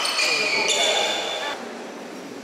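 Shouting voices and sharp sneaker squeaks on a badminton court floor, echoing in a large hall as a rally ends. The squeaks and voices stop about one and a half seconds in, leaving quieter hall noise.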